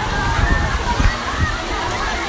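Water splashing and spraying at a water park's slides and pool, with many people's voices chattering in the background.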